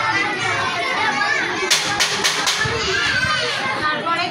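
Young children's voices talking and calling out over one another, with a quick run of four or five sharp slaps about two seconds in.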